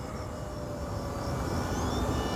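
Twin electric motors and propellers of an E-flite EC-1500 radio-control cargo plane at low throttle, heard as a faint steady whine over outdoor background noise as it flies past.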